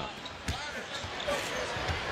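A basketball bouncing on a hardwood court, a few sharp thumps, over a low arena crowd murmur.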